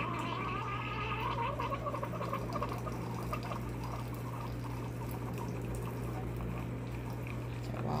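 Keurig single-serve coffee maker brewing: a wavering whine from the machine in the first few seconds, then coffee streaming into the mug over a steady low hum.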